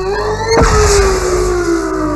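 A long, held yell over a cartoon energy-blast sound effect. A loud rumbling whoosh bursts in about half a second in, while the yell's pitch slowly falls.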